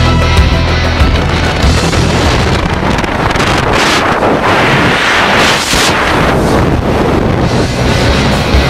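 Rock music soundtrack, with a loud rushing noise like wind swelling twice around the middle.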